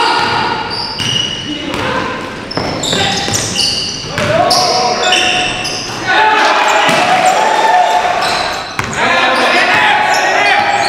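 A basketball being dribbled on a hardwood gym floor during a game, with players' voices calling out. It all echoes in a large gymnasium.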